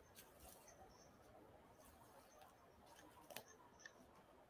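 Near silence, with faint scattered clicks and crackles; the strongest comes a little after three seconds in.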